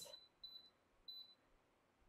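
Two short, faint, high electronic beeps from an Instant Pot Evo electric pressure cooker's control panel as the pressure-cook time is being set.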